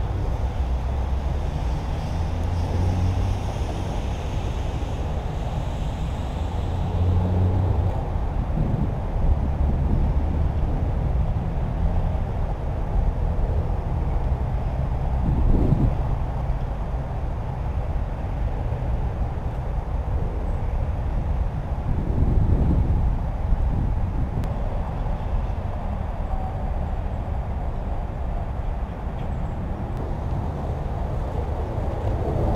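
Steady low rumble of highway traffic on a nearby bridge, mixed with wind buffeting the microphone, swelling now and then.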